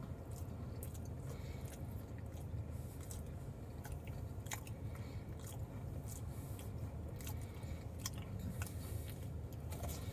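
A person chewing a bite of ricotta cannoli, with faint scattered crisp clicks and crunches from its shell. The shell is crunchy but not as crunchy as usual. A steady low hum runs underneath inside the car.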